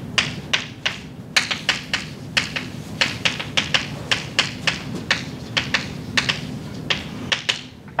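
Chalk writing on a blackboard: an irregular run of sharp taps and short scrapes, about three a second, as each letter is struck onto the board.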